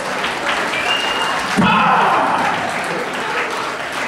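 Audience applauding and cheering, with shouts from the crowd that are loudest about halfway through.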